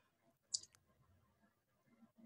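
Near silence in a pause between speech, broken by one faint, brief click about half a second in.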